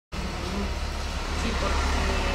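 Steady low rumble under faint, indistinct talk.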